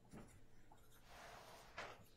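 Felt-tip marker writing on a paper pad: faint scratchy strokes, the loudest near the end.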